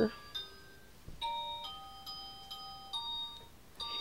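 A soft tinkling melody of single bell-like notes, one after another, with several overlapping as they ring on, like an electronic chime tune.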